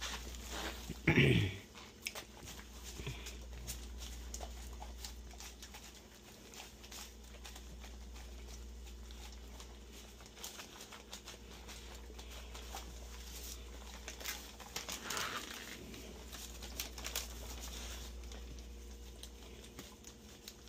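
Two dogs eating a sandwich off its paper wrapper: irregular small chewing, licking and smacking sounds with the paper crinkling under their muzzles. A man clears his throat about a second in, the loudest sound, over a low steady hum.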